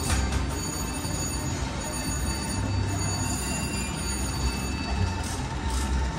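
Casino slot-floor sound: steady electronic bell-like tones from slot machines over background music with a pulsing low beat.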